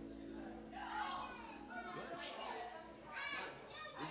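Indistinct chatter of several people talking after a church service, with a child's high voice standing out about three seconds in.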